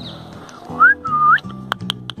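A person whistling: two short whistles, the second held and then rising at its end, over background acoustic guitar music.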